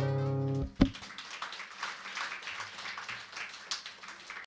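Final chord of an acoustic guitar ringing out, then stopped by a hand damping the strings with a short knock under a second in. Faint, scattered applause follows.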